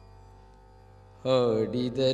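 Kannada devotional song (Dasara Pada) in Carnatic style: a quiet steady drone, then a loud melodic line comes in a little over a second in.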